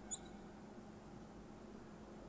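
A single brief high-pitched squeak of a marker pen on a whiteboard just after the start, over faint room tone with a low steady hum.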